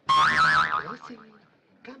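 A slapstick comedy sound effect: a sudden loud, wavering pitched tone that starts abruptly and fades out within about a second.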